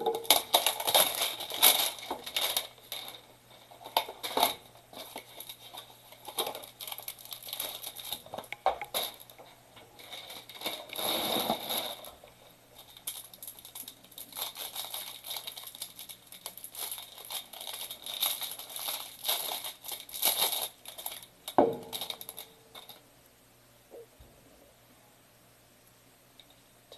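Plastic wrapping around a stack of baseball cards crinkling and tearing as a hanger box is opened and unwrapped by hand, with scattered crackles and taps of cardboard and cards being handled. A louder rustle comes about halfway through and a sharp knock near the end, after which the handling goes much quieter.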